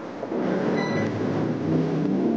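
A steady mechanical rumble with a low hum, like machinery running, starting just after the speech stops.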